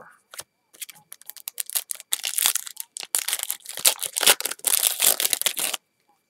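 Plastic foil trading-card pack wrapper being torn open and crinkled in the hands as the cards are pulled out. The crackling is loud and dense and cuts off suddenly near the end.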